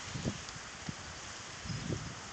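Steady outdoor wind noise on a phone microphone, with a few faint short low bumps.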